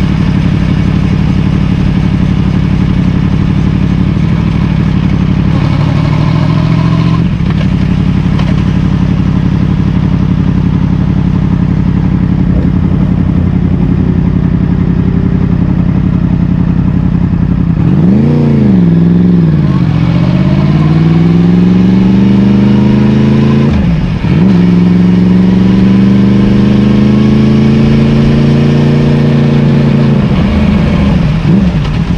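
Yamaha MT-10 SP's crossplane inline-four engine running steadily at low speed, then a sharp rise and fall in revs about eighteen seconds in. It then pulls away with rising pitch, dips briefly at a gear change a little after twenty-four seconds, and rises again.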